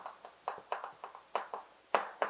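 Chalk writing on a blackboard: a quick series of short, sharp taps and scrapes, about three or four a second, as a word is written.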